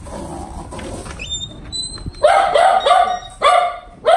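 A small dog barking about four times in quick succession, starting about halfway through.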